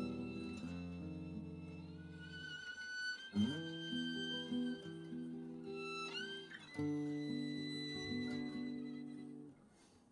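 Slow, gentle ballad played live by a small acoustic string band: a violin melody with long held notes over sustained accordion chords, guitar and upright bass. The chords change every few seconds, and the playing thins out briefly near the end.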